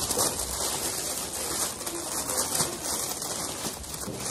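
Clear plastic gift-basket wrap crinkling and rustling steadily as it is pulled open and handled.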